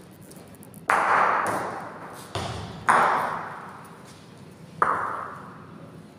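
Bocce balls knocking hard, four sharp clacks in a reverberant hall, each ringing out for about a second. The second knock, a little after two seconds in, is weaker and duller.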